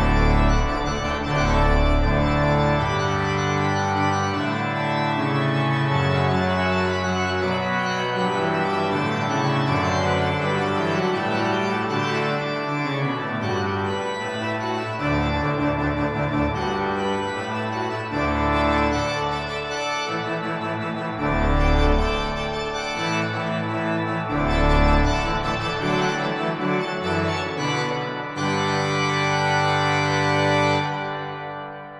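Organ playing a loud fanfare in full, sustained chords over deep pedal bass notes that enter and drop out.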